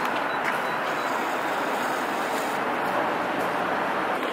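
Steady city street traffic noise: an even rush of passing vehicles that holds at one level throughout.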